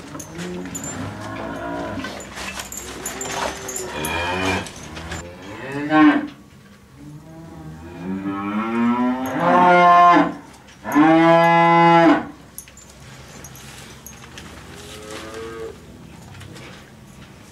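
Holstein dairy cows mooing repeatedly: a run of shorter moos in the first six seconds, then two long, loud moos past the middle, the second held on a steady pitch.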